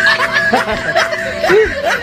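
Men laughing and chuckling together, mixed with bits of talk.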